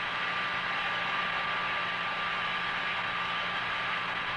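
Steady hiss and hum of the Apollo 8 onboard voice tape recording between crew remarks, with a thin steady high tone over the noise.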